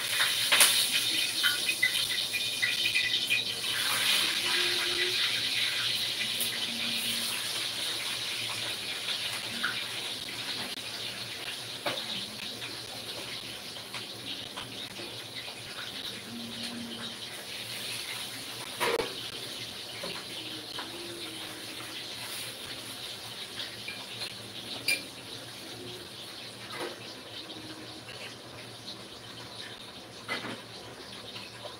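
Water running, starting suddenly and slowly fading, with a few clicks and a sharper knock about two-thirds of the way through.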